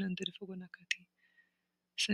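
A voice chanting rapid syllables with sharp clicks among them, breaking off about a second in and leaving near silence with a faint low hum.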